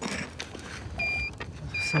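Handheld metal-detector pinpointer probe giving two short, high, steady beeps about a second apart, starting about a second in: it is picking up iron in the ground, the sign of an iron-bearing meteorite.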